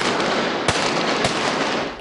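Pistol shots fired from a galloping horse: two sharp reports about half a second apart, over a continuous rushing wash of noise that echoes in an indoor arena and stops shortly before the end.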